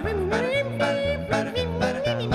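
Male a cappella vocal group singing a Turkish pop song. A lead voice slides and bends between notes over a sung bass line, with sharp percussive beats from the voices.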